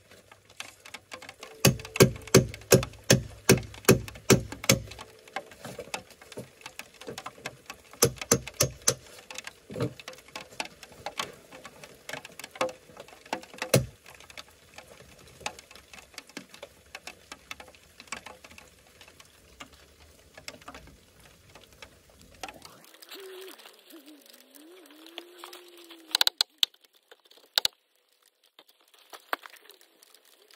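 A quick run of sharp knocks on lumber, about three a second for a few seconds, then shorter runs and scattered single knocks and taps as floor joists are worked into place.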